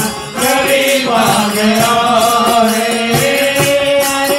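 A Hindi Krishna bhajan sung through microphones over sustained pitched accompaniment, with percussion keeping a steady beat.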